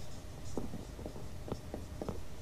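Faint writing sounds: short, irregular scratches and taps of a pen or marker working out the solution, a few strokes a second.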